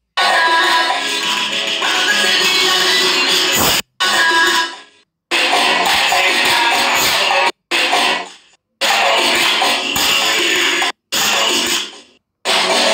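Dance music playing for the choreography, chopped into short segments: it cuts out abruptly several times, with brief silences in between, and some pieces fade away just before the break.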